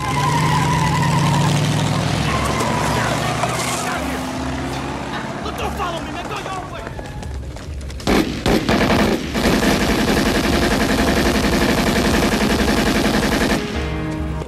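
Film drive-by shooting: a car pulls up with its engine running, then about eight seconds in a long, rapid burst of gunfire goes on for over five seconds and stops just before the end.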